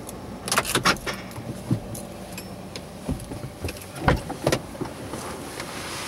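Clicks, knocks and rustling from someone moving about inside a stopped car's cabin while handling the camera, with the sharpest knock about four seconds in.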